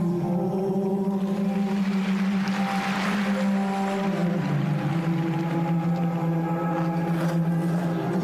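Slow program music with long held low notes over a steady drone, stepping down in pitch about halfway through, with a swell of hiss in the middle.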